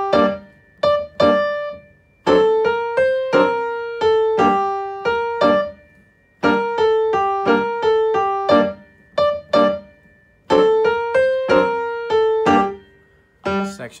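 Upright piano playing a lively tarantella in six-eight time, two hands, with short detached staccato notes grouped in phrases broken by brief pauses.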